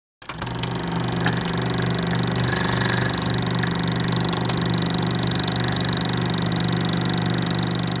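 Film projector running steadily: a low motor hum with scattered faint clicks, starting a moment in.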